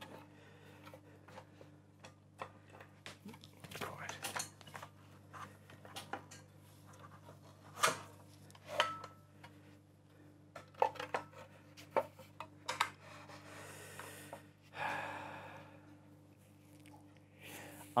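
Light knocks and clicks of wooden pieces being handled and set down on a workbench, with a short scraping rub about fifteen seconds in, over a faint steady hum.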